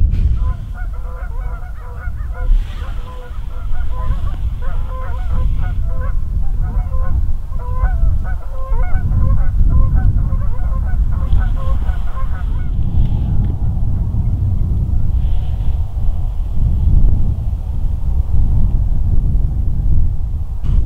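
A flock of geese honking, many calls overlapping, stopping about two-thirds of the way through, over a steady low rumble of wind on the microphone.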